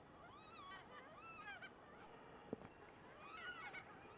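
Yellow-tailed black cockatoos calling faintly, in drawn-out cries that rise and fall, in three bouts: near the start, about a second in, and near the end. A single sharp click about halfway through.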